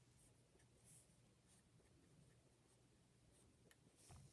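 Near silence, with faint, short scratching strokes of a pen writing on paper, a few in a row with gaps between them.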